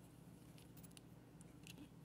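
Near silence, with a few faint ticks as a pocketknife is handled.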